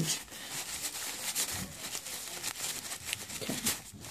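A paper towel and a wax-covered plastic packet rustling and crinkling as they are handled, with many small irregular crackles.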